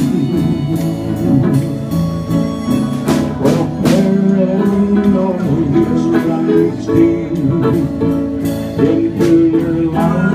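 Small live band playing together: electric guitar, electric bass and drums, with a steady beat.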